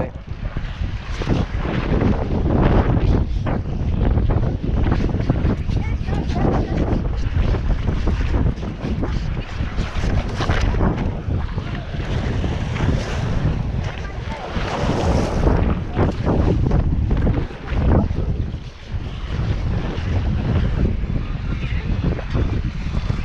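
Wind buffeting the microphone in gusts, over the wash of small surf breaking on the beach.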